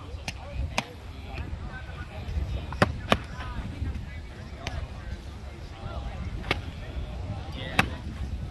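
Foam-padded LARP swords smacking against shields and each other in sharp, irregular hits, about seven in all, the loudest about three seconds in and again near the end. Faint chatter and a low rumble run underneath.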